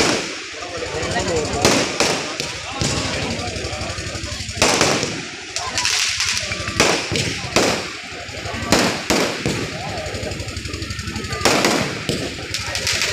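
Aerial fireworks bursting overhead: about a dozen loud bangs at uneven intervals, some in quick pairs.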